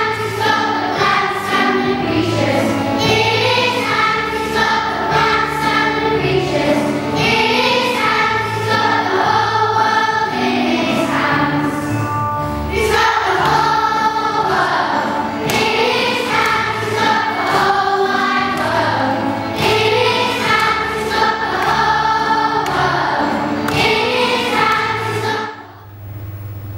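A children's choir singing a song with accompaniment, fading out just before the end.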